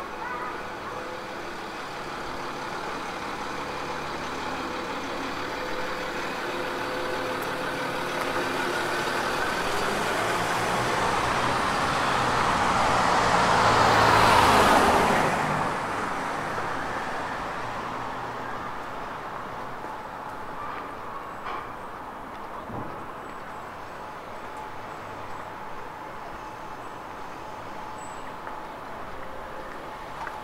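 A motor vehicle approaching and passing close by on the street: its engine and tyre noise build slowly to a peak about halfway through, then fade, leaving a steady background hum of traffic.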